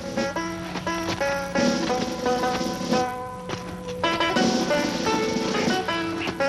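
Background film music: a melody of short, separate notes over a steady low held note.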